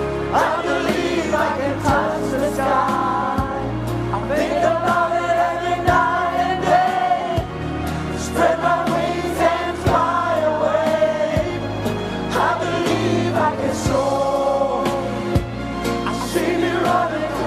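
A man belting a solo vocal in a gospel-soul style, long held notes with vibrato, over a backing of choir voices, bass and a steady drum beat.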